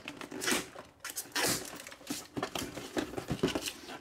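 Plastic shrink wrap on a model kit box crinkling and tearing as it is slit and pulled open with a metal file, in a run of short, irregular rustles.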